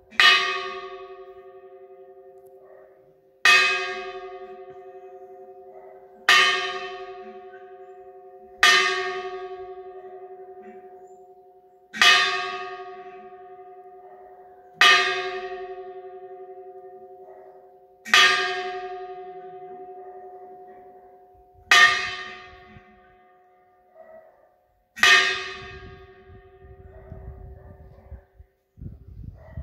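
A church bell struck slowly by hand, nine single strokes about three seconds apart, each ringing out and fading before the next. It is rung to call the faithful to Easter Sunday, announcing the Resurrection.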